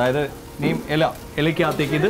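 A man talking, with meat frying on a flat-top griddle in the background.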